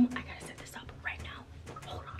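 A woman whispering.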